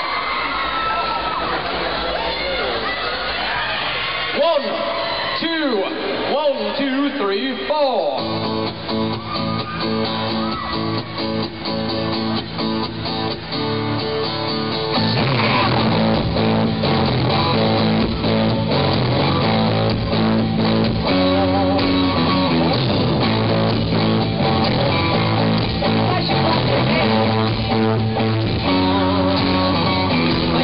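Live song performance: the audience cheers and screams, then acoustic guitar strumming starts about eight seconds in. A male lead vocal comes in over the guitar about halfway through, and the music gets louder.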